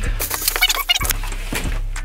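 Plastic packing material crinkling and rustling, with cardboard and paper handled, as packaging is pulled out of a shipping box: a quick run of crackles.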